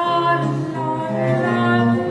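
A female voice singing an early-17th-century Italian song with dramatic, changing notes, over low sustained bass notes from the continuo accompaniment.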